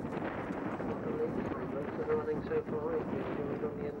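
Race commentator's voice over a public-address loudspeaker, heard from a distance and indistinct, with wind noise on the microphone.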